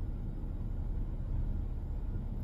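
Steady low rumble inside a parked vehicle's cabin, with no distinct events.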